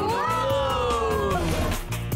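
A long drawn-out shout by voices calling together, falling slowly in pitch and lasting about a second and a half, over background music with a steady beat.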